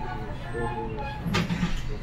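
Tram running on street track, heard from the driver's cab: a steady low rumble with a sharp click about a second and a half in. The pitched sounds of the tram's recorded onboard announcement begin over it.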